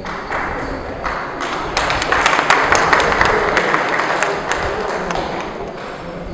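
Audience applauding: many hands clapping, building up about a second and a half in, at its fullest in the middle, and dying away near the end.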